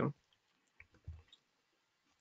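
Quiet room tone with one faint short click about a second in.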